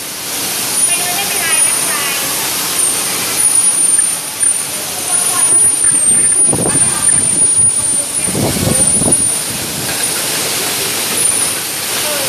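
Machinery noise of a can-filling and conveyor line for sweet corn: a steady loud hiss and rumble, with a thin high whistle coming and going and two louder rushes in the second half.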